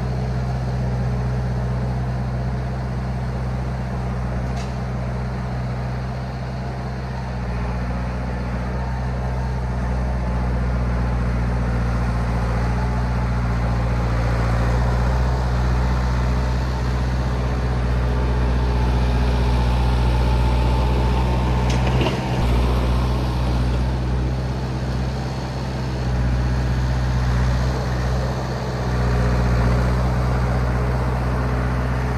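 Old crawler bulldozer's engine running steadily as the machine plows through deep snow, growing a little louder as it comes closer. A short sharp knock about two-thirds of the way through.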